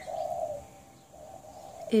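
A dove cooing: two low, drawn-out coos, the first ending about half a second in and the second starting a little past one second.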